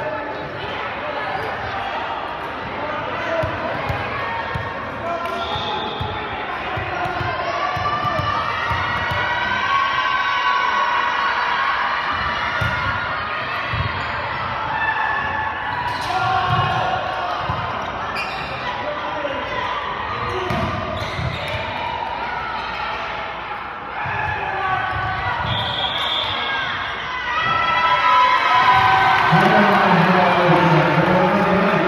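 Volleyball rally in a school gym: sharp slaps of the ball against hands and arms over players' calls and spectator chatter. The crowd's voices grow louder near the end as the point is won.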